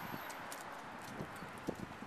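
Faint footsteps on pavement: soft, irregular taps over a low, steady outdoor hiss.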